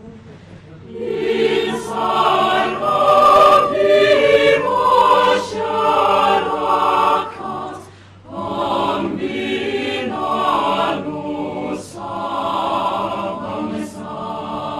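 A choir singing in several voice parts, the sung phrases broken by a short pause about eight seconds in.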